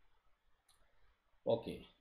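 A faint single click, a computer mouse click advancing the lecture slide, in a near-quiet pause, followed about a second later by a man saying "okay".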